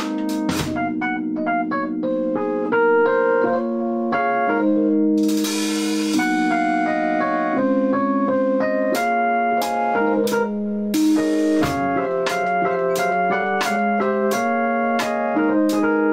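Electronic keyboard and drum kit playing together: held chords with a melody moving over them, cymbals crashing about five and eleven seconds in, and regular drum and cymbal hits through the second half.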